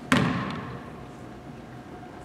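A single sharp thump echoing through a large gymnasium just after the start, its ring dying away over about half a second, then the low background of the hall.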